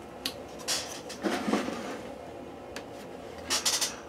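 A few faint clicks and knocks on a workbench as small objects are handled and set down: a wooden test piece and a paintbrush being put aside.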